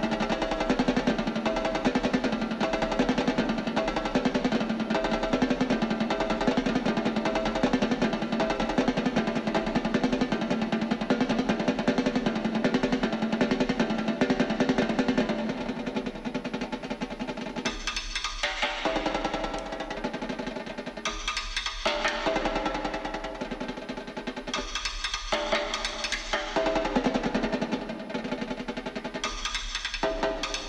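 Three snare drums played together with sticks: a dense, continuous passage of rapid strokes, then from about halfway a sparser rhythm broken by loud accented groups.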